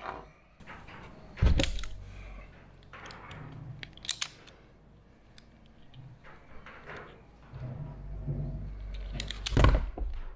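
Hands handling wires and a small plastic push-in wire connector on a workbench: light clicks and handling rustle, with two louder thumps, one about one and a half seconds in and one near the end.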